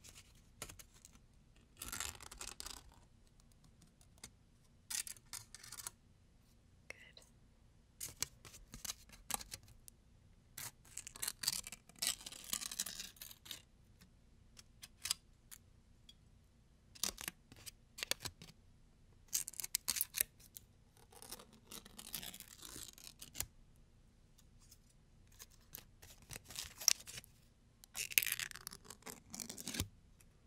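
Thin foil sweet wrapper crinkled and torn between fingertips right at the microphone, in irregular bursts of fine crackling separated by short pauses.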